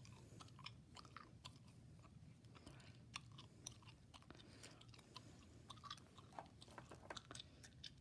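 Close-miked gum chewing: quiet, irregular mouth clicks, several a second.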